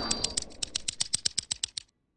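A logo sound effect: a rapid, even run of light clicks like typing, about ten a second, that stops suddenly near the end.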